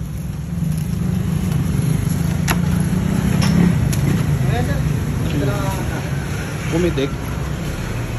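A motor vehicle engine running steadily, its low rumble swelling to its loudest about three and a half seconds in, with a sharp click about two and a half seconds in and people talking faintly.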